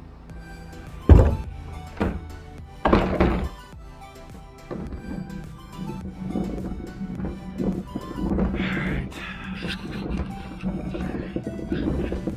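Background music, with a loud thunk about a second in as the plastic lid of a wheeled trash cart is let fall shut, followed by a couple of lighter knocks around two and three seconds in.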